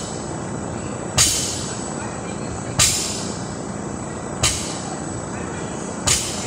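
A barbell loaded with bumper plates thudding onto the floor three times, about every second and a half, as deadlift reps are pulled one after another, over a steady background hum.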